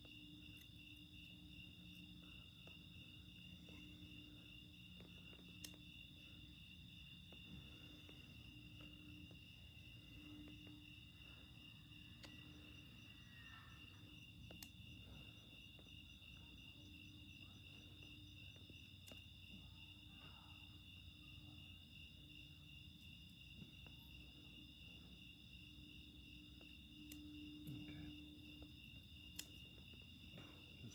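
Faint, steady chorus of crickets chirping, a high pulsing trill, with a few faint clicks.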